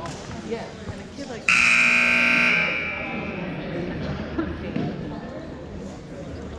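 Gym scoreboard buzzer giving one loud, held blast of about a second, ringing on in the hall as it fades, over a murmur of voices. With both teams in timeout huddles and the clock stopped, it marks the end of the timeout.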